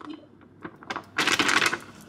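Plastic microwave rice pouch crinkling as it is squeezed and shaken empty into a bowl: a few small clicks, then about a second of dense crinkly rustling in the second half.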